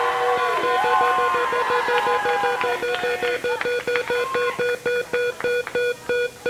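The Price is Right's Big Wheel spinning, its flapper clicking against the pegs with a ringing tick. The clicks come rapidly at first and slow to about four a second as the wheel winds down. Audience voices shout over the first few seconds.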